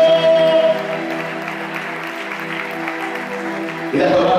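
Electronic keyboard holding a sustained chord in the church, with a voice over it that stops after about two-thirds of a second.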